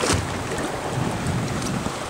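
Wind buffeting the microphone over open water, a steady rushing noise, with a short knock just after the start.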